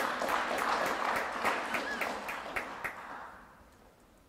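An audience applauding. The dense clapping thins to scattered claps and dies away about three seconds in.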